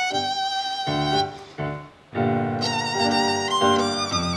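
Live tango music led by violin over upright double bass and keyboard. The phrase breaks off into a brief pause about halfway through, then the band comes back in fuller.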